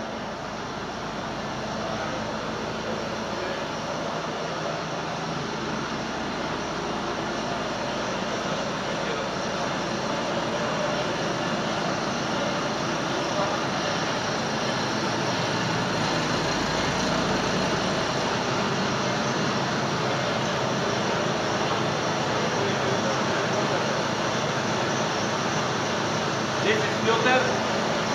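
Steady rushing machinery noise of a running sawdust-fired biomass steam boiler plant, growing gradually louder. A voice is heard briefly near the end.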